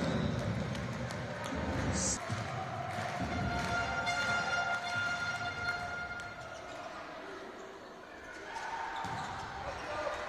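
Volleyball match in an indoor arena: crowd noise with dull thuds of the ball. A steady pitched tone is held for about two and a half seconds midway through.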